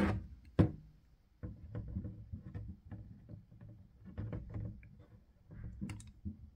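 A plastic motor-oil jug being handled and opened: a sharp click about half a second in, then scattered light knocks and clicks as it is tipped to pour into a plastic cup.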